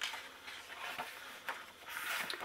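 Faint rustle of a paper page being turned in a hardcover picture book, with a few soft taps.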